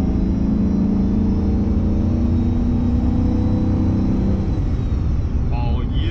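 Pickup truck engine pulling hard under heavy throttle, heard from inside the cab as a loud drone at one steady pitch that drops away about four and a half seconds in, as the throttle is let off.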